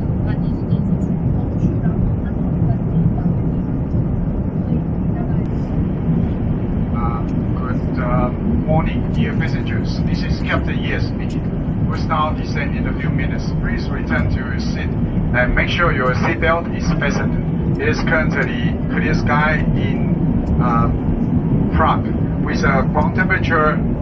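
Steady low rumble of a jet airliner's cabin in flight. From about seven seconds in, a cabin crew announcement comes over the public address, sounding thin and narrow as it does through the cabin speakers.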